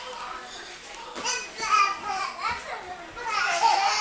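A young child's high-pitched babbling and squeals, starting about a second in and coming in short bursts.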